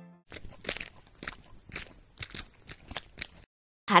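A run of short, irregular clicks, about five a second, that stops about three and a half seconds in.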